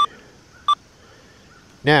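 XP Deus II metal detector's keypad beeping as its buttons are pressed: two short, high beeps less than a second apart.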